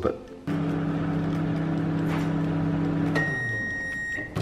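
Microwave oven running with a steady hum while heating a bowl of soup, then shutting off with a click about three seconds in as its hum dies away, followed by a single high, steady beep that signals the end of the cycle.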